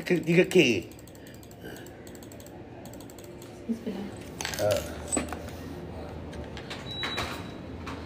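A brief word at the start, then quiet indoor background with faint scattered clicks and a few short, distant voices.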